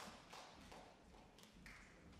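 Near silence with a few faint, scattered taps.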